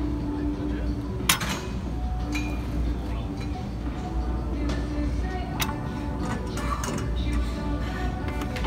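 Steel weight-stack plates of an abdominal crunch machine clinking a few times as the stack is lifted and set back down during reps; the sharpest clink comes about a second in, with more in the second half.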